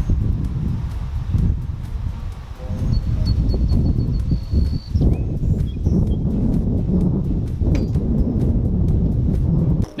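Wind buffeting the microphone in gusts, a loud low rumble that swells and dips. A thin high tone sounds faintly for a couple of seconds in the middle.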